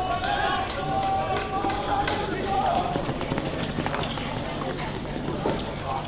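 Field hockey players shouting and calling to each other in open play, one long drawn-out call among them, over running footsteps on artificial turf and several sharp clicks.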